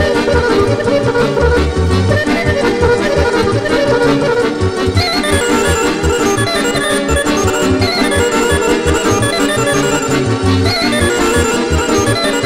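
Instrumental Serbian folk dance music (kolo style), an accordion-sounding lead over a steady, rhythmically pulsing bass line.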